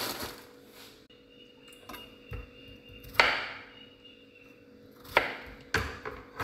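Kitchen knife chopping peeled potatoes on a plastic cutting board: a few sharp knocks, the loudest about three seconds in and two more close together near the end, after a brief rustle at the start.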